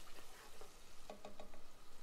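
Diced onion sizzling faintly in hot oil in a nonstick pot, with light scrapes and ticks of a spatula stirring it.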